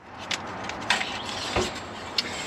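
Handling noises as the Allison transmission's dipstick is drawn out of its tube: a few light clicks and a knock about one and a half seconds in, over a steady hiss.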